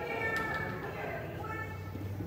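A dog whining in a few high-pitched, drawn-out cries.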